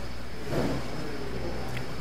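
Steady low background hum in a church hall, likely electrical hum from the sound system, with a short faint sound about half a second in.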